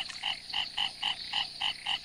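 A frog calling: an even series of short, repeated notes, about four a second.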